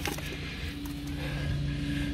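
Steady low hum of a car's idling engine heard inside the cabin, holding two fixed low tones throughout, with faint paper handling.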